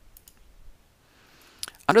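A few faint, sharp computer mouse clicks, one shortly after the start and another about a second and a half in; a man starts speaking just before the end.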